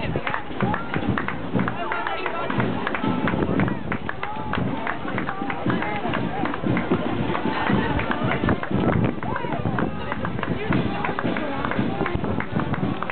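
Mass start of a road race: many footsteps on tarmac from a crowd of runners and walkers passing, with crowd chatter and music playing in the background.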